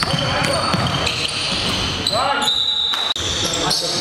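A basketball being dribbled on a hardwood gym floor, with voices calling out on the court and the echo of a large hall.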